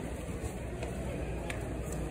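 Steady background hubbub of a crowded indoor hall, a low murmur of distant voices and activity, with a few faint ticks scattered through it.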